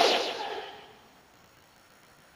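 A short whoosh sound effect, a transition sweep that starts suddenly and fades away within about a second.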